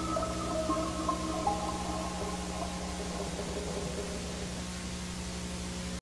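Steady static hiss over a low electrical hum, with a few long-held music notes that fade out over the first three seconds.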